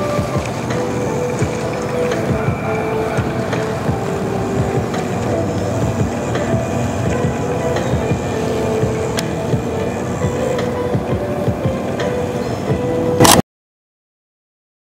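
Wind rumbling on the microphone, mixed with music. Both cut off abruptly about a second before the end.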